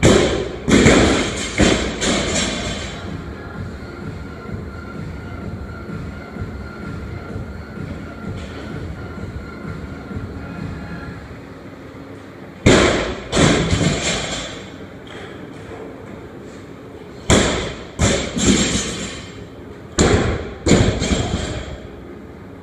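Loaded barbell with bumper plates dropped from overhead onto the gym floor after clean and jerks: four drops, each a heavy thud followed by a few quicker, weaker bounces.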